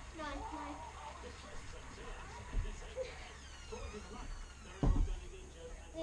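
A child doing a cartwheel on a carpeted floor: a dull thud as hands and feet land, about five seconds in, with a smaller thump halfway through. A child's voice says 'no' at the start.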